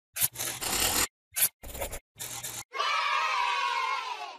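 Animated logo intro sound effects: four short noisy swishes in quick succession, then a sustained ringing tone with several overtones that drifts slightly downward and begins to fade near the end.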